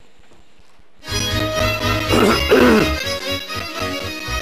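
Romanian folk-music accompaniment led by violin that starts abruptly about a second in, after a moment of low room tone. It has a couple of falling slides in the middle and then settles into a steady beat of about four a second.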